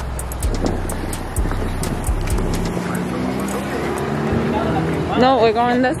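Outdoor street noise with a vehicle engine running close by and dull bumps of the camera being handled. A voice comes in near the end.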